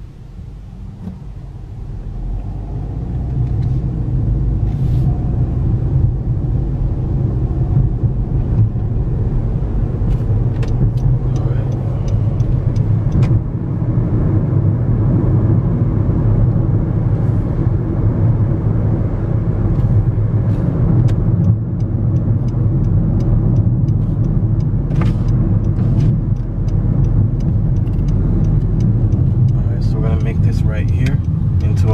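Car cabin noise from inside a moving car: engine and tyre rumble that builds over the first few seconds as the car pulls away from a stop, then holds steady at driving speed.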